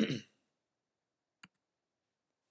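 A man clears his throat once at the start, followed about a second and a half in by a single sharp click.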